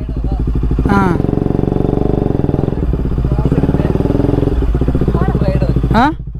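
Bajaj Pulsar RS200's single-cylinder engine running steadily at low revs, with short bits of voices about a second in and near the end.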